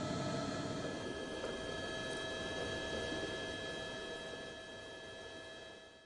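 A steady machine hum over hiss, with a few thin steady tones. It fades a little toward the end, then cuts off abruptly.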